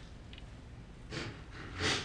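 A woman's audible breaths: one short breath about a second in and a louder one near the end, over quiet room tone.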